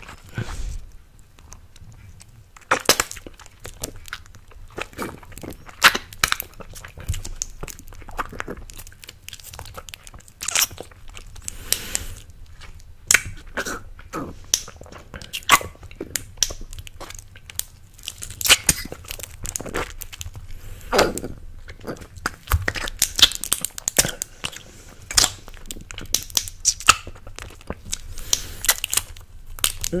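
Close-miked wet mouth sounds from sucking and licking a green apple candy: irregular smacks, clicks and slurps, some sharp and loud.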